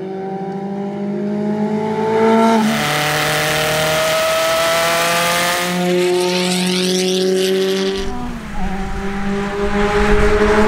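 Lancia LC1's turbocharged four-cylinder engine at full throttle on track. Its note climbs with the revs and drops back sharply several times, as at upshifts. A rush of noise runs from about three to five seconds in.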